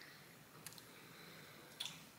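Near silence: room tone, with a couple of faint brief clicks.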